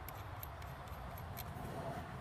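Faint handling noise from a carbine being turned over in the hands, its plastic shell rubbing lightly against the hands, over a quiet, steady outdoor background with no distinct clicks.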